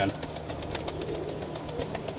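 Faint sounds of young teddy pigeons in a loft, over a low steady hum.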